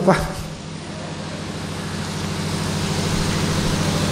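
A steady noise that swells gradually over about three seconds, over a constant low electrical hum.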